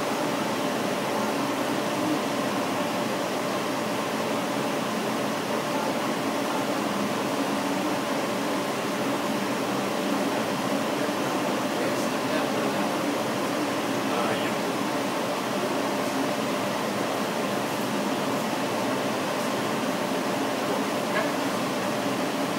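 Laser engraver running as its head traces fine lines: a steady, fan-like whir with a few faint steady hums underneath.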